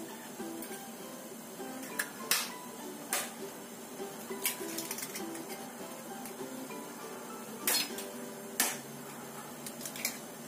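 Soft background music with plucked guitar, over which eggshells crack sharply about five times as eggs are broken open over a ceramic bowl: two close together about two seconds in, one just after three seconds, and two more near the end.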